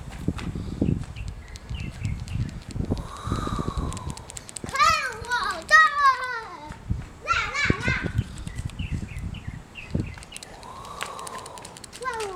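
A young child's high-pitched squeals and calls, the pitch wavering up and down in two runs around the middle, over low rumbling noise in the first few seconds.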